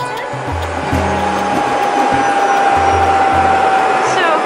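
Helicopter turbine running with a steady whine that sinks slightly in pitch, the rushing noise building in the first second, over background music with a plucked bass line.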